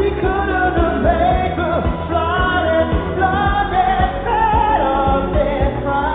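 Live synth-pop performance: a lead vocal sings a melody over band backing with a steady beat, in a recording dull above the mid-highs.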